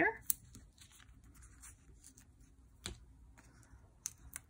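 Cardstock tag and foam adhesive dimensionals handled on a desk: faint paper rustling with a few sharp clicks, the loudest about three seconds in.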